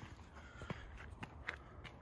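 Faint footsteps of someone walking, a few soft ticks against a low background.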